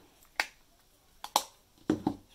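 Sharp clicks of a plastic Holika Holika Jelly Dough Blush compact being snapped shut and set down on a table: a single click, then a louder double click, then another click near the end.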